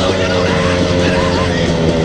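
Dirt bike engine running at a steady, moderate throttle, its pitch nearly constant.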